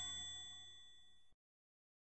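The tail of a bell-like ding sound effect, several steady ringing tones fading away. It cuts off suddenly after about a second and a half, leaving dead silence.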